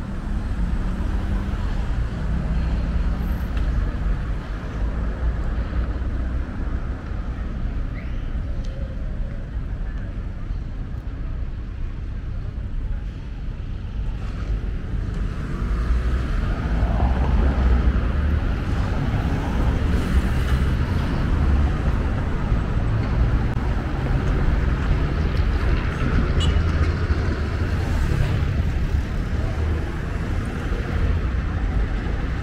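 Street traffic ambience: cars and a motorcycle passing on a city avenue, with a steady low rumble that grows a little louder about halfway through.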